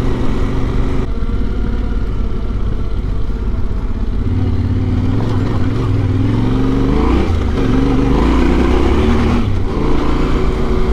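Yamaha Ténéré 700's parallel-twin engine running at riding speed on a dirt track, heard from the rider's seat with wind and road noise. In the second half the revs drop and rise again several times as the throttle is worked.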